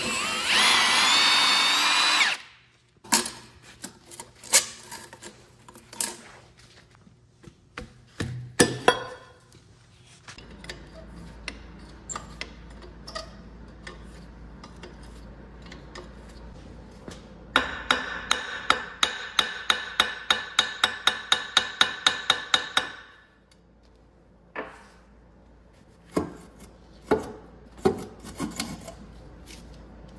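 Cordless impact wrench running for about two seconds at the start, its motor rising in pitch, as it spins fasteners off a Caterpillar C-10 diesel's turbo and intake plumbing. Then scattered metal clanks of tools and parts, and a ratchet clicking about four to five times a second for about five seconds.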